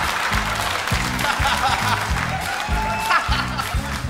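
A live band vamping a steady bass beat under audience laughter and scattered applause.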